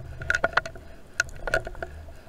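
Underwater sound picked up by a camera in a waterproof housing: many irregular sharp clicks and crackles over a low rumble of water moving past the housing, the rumble fading near the end.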